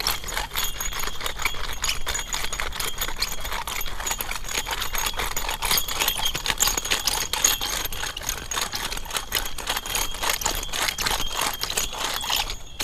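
Garden Weasel rotary cultivator rolled back and forth over turf, its metal star tines clicking and rattling steadily as they work grass seed into the soil.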